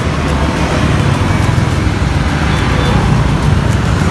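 Road traffic noise: the steady low rumble and rushing noise of a passing vehicle.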